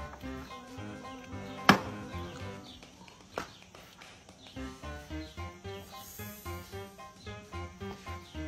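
Background music with a steady beat. A little under two seconds in, a single sharp knock stands out above it: a plastic water bottle landing on the table. A fainter knock follows just past the three-second mark.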